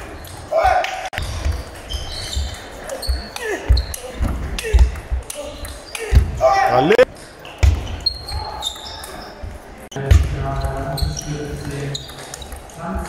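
Table tennis rally: the celluloid ball clicks sharply off the bats and the table many times, echoing in a large sports hall, with voices from the surrounding hall mixed in.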